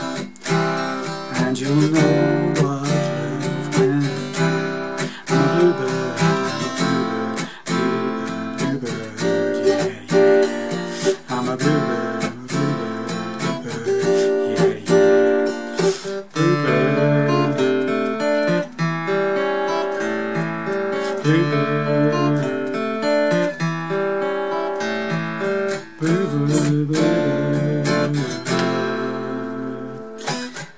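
Steel-string acoustic guitar strummed through a changing chord progression in a steady song rhythm, played in standard tuning with minor-seventh and major-seventh chords.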